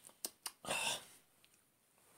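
Mouth sounds while tasting a drink: a few sharp lip and tongue smacks, then a short breathy exhale a little over half a second in.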